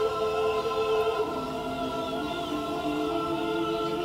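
Background music of a choir holding long sustained chords, moving to a new chord about a second in.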